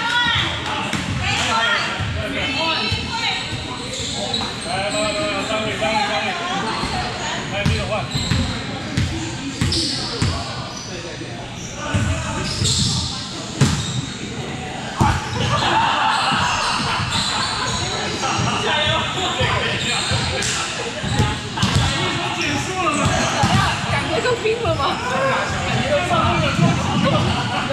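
Volleyballs being hit and bouncing on a hardwood gym floor, scattered sharp thuds that echo in a large hall, over ongoing players' chatter.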